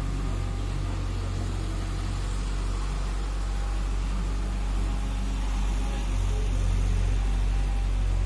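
A steady low hum of a running motor or mains-powered equipment, growing a little louder about six seconds in.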